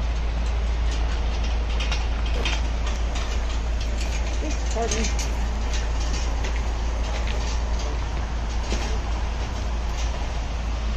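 Steady, loud rumbling noise with a deep low hum underneath, a few light clicks, and faint voices in the background.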